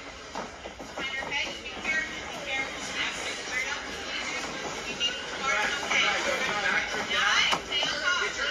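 Spectators and corner coaches shouting and talking over each other around a grappling cage, with music in the background. The voices grow louder near the end, and a sharp knock comes about seven and a half seconds in.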